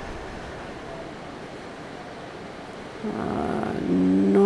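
Steady background noise, then about three seconds in a woman's voice hums a held "mmm".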